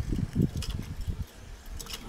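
Wind buffeting the microphone in irregular low gusts, strongest in the first half-second or so, with a few faint light clicks near the end.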